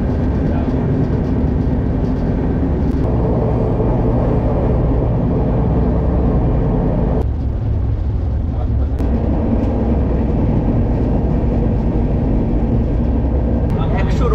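Steady, loud running noise inside an Indian Railways AC double-decker coach moving at about 100 km/h: a low rumble of wheels on rail with the coach's hum. The noise changes abruptly a couple of times.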